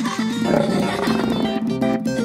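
A cartoon lion roar sound effect over children's song backing music, coming in about half a second in and fading out over the next second.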